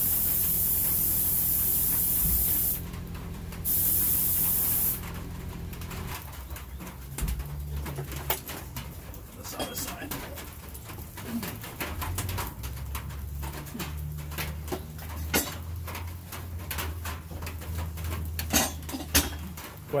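Compressed air hissing loudly from an air chuck into a car tire to seat its bead, in two bursts: about three seconds, a short pause, then about a second and a half more. After that come quieter clicks and knocks as the tire is handled on the tire changer.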